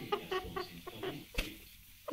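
Broody red-lored Amazon parrot hen making a quick series of short, soft clucks.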